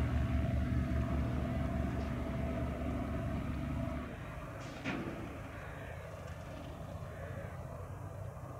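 Hawker Fury II's Bristol Centaurus 18-cylinder sleeve-valve radial engine at takeoff power during the takeoff roll, a low pulsing drone. It drops suddenly to a much quieter, more distant hum about halfway through, and a short sharp sound comes just before five seconds in.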